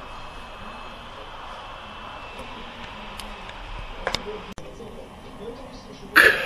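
Steady road and engine noise of a car heard inside its cabin while it speeds up on a motorway, with a couple of short sharp clicks about four seconds in.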